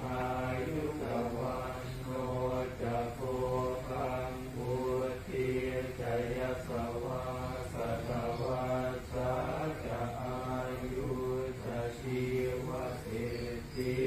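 Buddhist monk chanting prayers: a man's voice in a rhythmic, repeating chant over a steady low hum.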